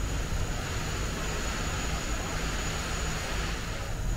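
Steady rushing background noise over a low rumble, with no distinct events.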